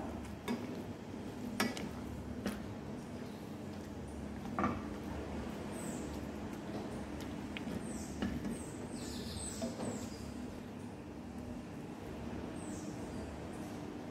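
Soft boiled pumpkin being mashed in a cooking pot: a quiet, soft working sound with a few sharp knocks of the utensil against the pot in the first five seconds. Faint brief high chirps come and go in the second half.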